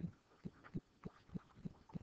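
Faint, irregular run of light knocks, about four a second, from a stylus tapping and stroking on a pen tablet as words are handwritten.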